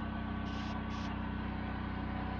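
Vehicle engine idling: a steady low hum.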